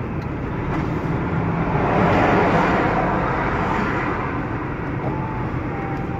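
Road noise of a vehicle driving at speed, a steady engine and tyre sound that swells about two seconds in as an oncoming lorry passes, then eases.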